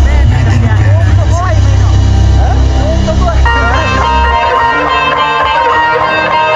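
Live Punjabi pop band playing loudly, heard from within the crowd: a voice sings over drums, bass and keyboards. About three and a half seconds in a sustained keyboard chord comes in, and soon after the heavy bass drops away.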